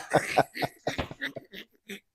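A man laughing hard in short, breathy, stifled bursts that grow weaker and die out near the end.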